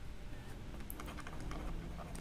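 Faint, scattered light taps and clicks of a stylus on a drawing tablet as handwriting is being written, over a low steady hum.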